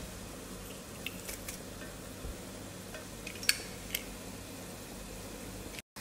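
Chopped mushrooms quietly sizzling as they sauté in a nonstick pan, with a few faint clicks.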